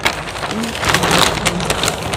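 Plastic carrier bag rustling as suit cloth is pulled out of it and handled: a dense run of small sharp crackles.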